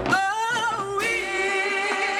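Marching band members singing together unaccompanied, holding notes with a wavering vibrato and moving to new notes just as it opens and again about a second in.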